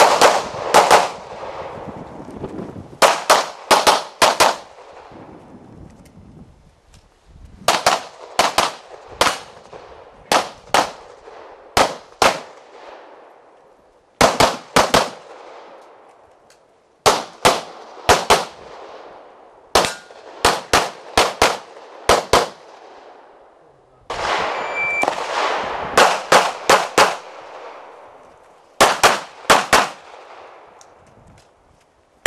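Pistol fired in rapid strings of two to five shots, with pauses of a second or two between strings as the shooter moves between positions; each shot is sharp and echoes briefly.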